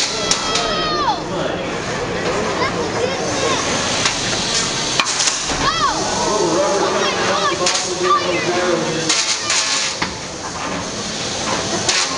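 Indistinct spectator chatter and exclamations, broken by several sharp knocks and clatters from small combat robots hitting each other and the arena walls.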